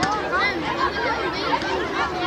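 Many children's voices chattering and calling out at once, a steady babble with no single voice standing out.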